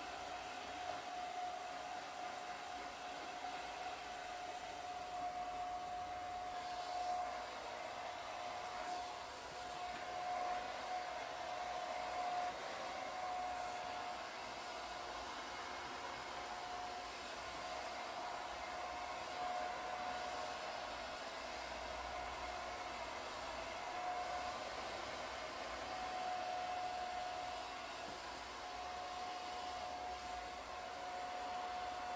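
Handheld hair dryer running steadily during a blow-dry, the rush of air carrying a constant whine from its motor.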